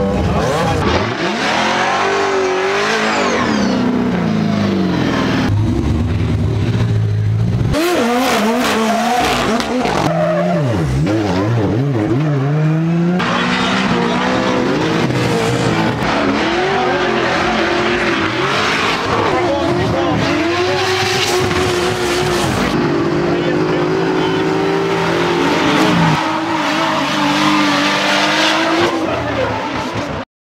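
Drift cars at a racetrack, their engines revving up and down hard with tyres squealing as they slide, picked up by a shotgun microphone at the trackside. Several clips are cut together.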